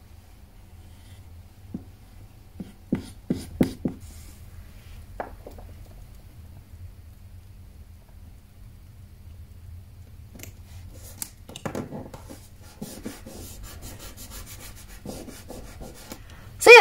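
Quiet paper-craft handling: a glue tape runner laying adhesive on paper, with light clicks and crackles, then fingers rubbing and pressing the paper down onto card, ending in a run of quick, even scratchy strokes.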